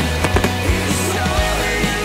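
Fireworks launching and bursting, a few sharp bangs at uneven intervals, over loud music with no singing.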